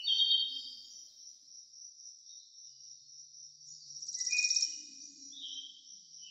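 High-pitched insect chirping over a steady high drone, with a rapid pulsing trill about four seconds in.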